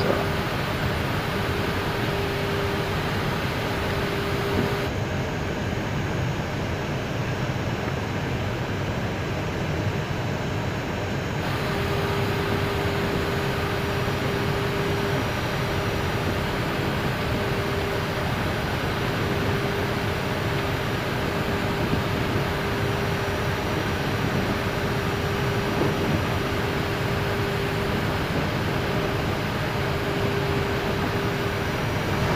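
Steady cockpit noise of an Airbus A319 on final approach in landing configuration: rushing airflow over the airframe and engines at approach power, with no change in level. A steady mid-pitched hum runs through it, dropping out for about six seconds from about five seconds in.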